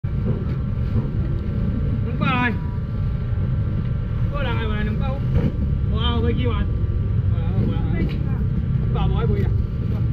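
Street-market ambience: a steady low rumble, with short bursts of voices calling out every second or two.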